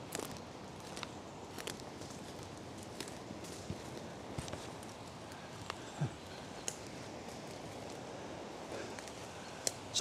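Footsteps of rubber wellington boots through dead leaves and twigs on a woodland floor, with scattered light cracks and crunches at an uneven pace.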